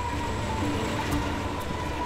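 Elizabeth line electric train running along the track: a low rumble with a steady high whine.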